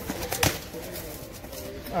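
Cardboard shipping case being opened by hand: two sharp snaps about half a second apart as the flaps are pulled open, then quieter handling of the cardboard.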